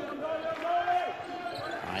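Court sound of live basketball play: a ball being dribbled on the hardwood floor, with thin squeaky tones in the first half.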